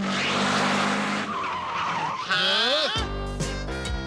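Cartoon sound effects of a racing vehicle: a rushing hiss over a steady low hum, then a high warbling squeal that swoops up and down. Music comes in about three seconds in.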